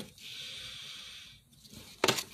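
A single long sniff through the nose, smelling a scented wax bar held up to the face; the faint breathy inhale lasts a little over a second and then stops.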